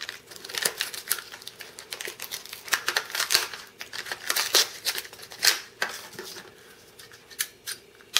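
A small cardboard product box being opened by hand: a quick run of scratchy rustles and clicks as the card flaps and insert are pulled apart, thinning to a few handling clicks over the last two seconds.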